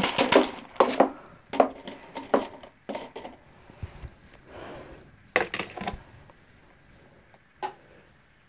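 Pumice and clay pebbles (LECA) clicking and rattling in a clear plastic pot as it is handled and set down into an outer pot. The sound is a string of short, sharp clicks and knocks that thin out towards the end.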